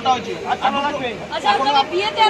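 People talking: voices chattering at a busy food stall.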